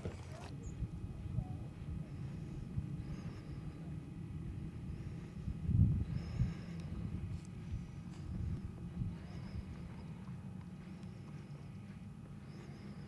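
Low rustling and irregular thumps of camera handling or footsteps on a dry wash, with a louder thump about six seconds in, and faint short high bird chirps every few seconds.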